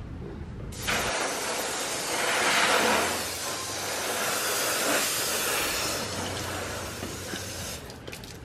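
Garden hose spray nozzle hissing steadily as it sprays water over a car's paintwork. It starts about a second in and is loudest a couple of seconds later.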